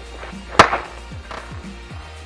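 One hard hammer blow into the cracked LCD panel of a Mac computer about half a second in, a sharp crack with a short rattle after it, followed by a weaker knock, over background music with a steady thumping beat.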